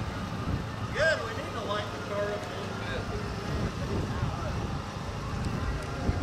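People talking indistinctly in the background over a steady low rumble, with one short voiced call about a second in.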